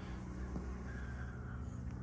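Quiet room tone with a steady low hum and a faint click about halfway through.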